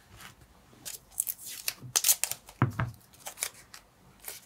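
Blue masking tape pulled off its roll in a run of short crackling rips, the loudest about two seconds in, with a dull knock on the table just after.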